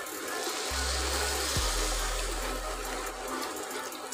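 Milk poured in a steady stream into a pot of roasted moong dal, the liquid running and splashing onto the dal.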